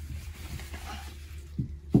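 Soft rustling of a down blanket being handled and pressed into place against the van's back doors, over a steady low hum.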